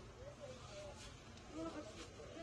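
Faint, indistinct voices of people talking in the background over a low steady hum.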